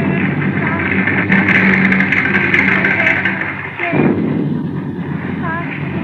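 Radio-drama sound effects of a rumbling storm and a rolling coach, mixed with a held low musical chord that stops a little under four seconds in. The old broadcast recording sounds dull, with no high treble.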